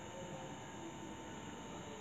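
A pause in speech: faint steady hiss with a thin, steady hum.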